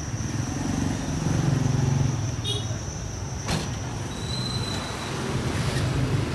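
A motor vehicle engine running at low revs, its pitch rising slightly about a second in and settling again, with a single sharp click or knock about halfway through.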